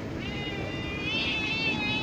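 Black cat giving one long, drawn-out meow that starts just after the beginning and is still going at the end, begging for more food.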